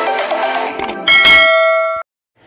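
Intro music ends, then a single bell-chime sound effect strikes about a second in and rings on, fading, until it cuts off suddenly.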